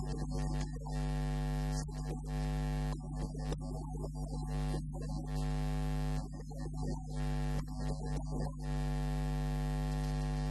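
Steady electrical mains hum, with long held pitched tones over it that stop and start every second or two.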